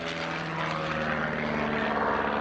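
A DHC-1 Chipmunk flying overhead, its single propeller engine droning with a steady note that falls slowly in pitch and grows a little louder as it passes.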